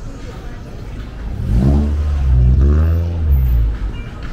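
Car engine accelerating close by, starting about a second and a half in. Its pitch rises twice before it drops back to the street background near the end.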